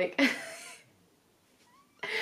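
A woman's breathy laughter trailing off into quiet, with a faint high squeak rising near the end.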